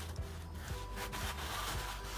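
Fabric and ribbon rubbing as hands handle a crochet headband and hair bow on a towel-covered form, over soft background music.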